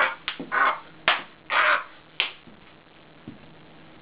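A man's short, loud yelps and cries mixed with sharp knocks, about six in quick succession over two seconds, as he fakes uncontrollable muscle spasms. Then only a low background hum.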